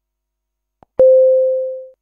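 Silence, then a faint click and a single pure electronic beep that starts sharply about a second in and fades away over about a second.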